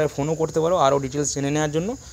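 A man talking in Bengali, with a steady high-pitched whine underneath.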